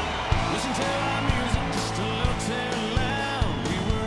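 Live country-rock band playing a song's instrumental intro: electric guitar lines gliding in pitch over a steady drum beat.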